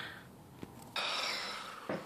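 A quick breath out close to the microphone about a second in: a sudden breathy hiss that fades away over most of a second, after a quiet moment with one faint click.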